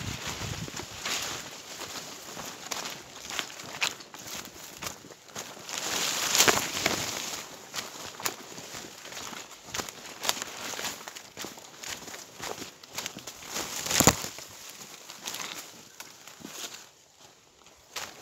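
Footsteps pushing through forest undergrowth, leaves and branches brushing and crunching in an uneven run of short cracks. The loudest come about six and a half and fourteen seconds in.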